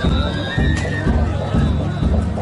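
Danjiri festival music from the float: big taiko drum beats about twice a second, with short high held notes above them.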